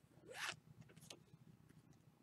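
A brief rasp, about half a second in, of one trading card sliding across another, followed by a couple of faint ticks; otherwise near silence.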